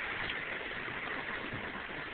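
Heavy rain falling on a car's roof and sunroof, heard from inside the cabin as a steady hiss.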